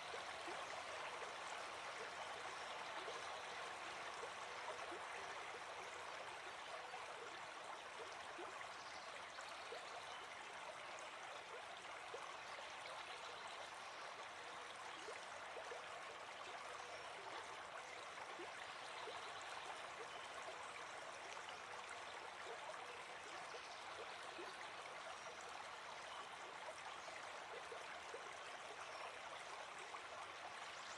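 Faint, steady sound of running water from a small stream, a nature-ambience bed under a guided meditation.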